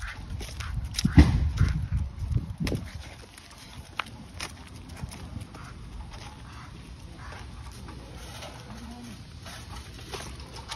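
Footsteps and the rustle and bump of a handheld phone while walking a dog on a leash. The noise is loudest, with a low rumble and knocks, for the first three seconds, then settles to a quieter background with scattered faint clicks.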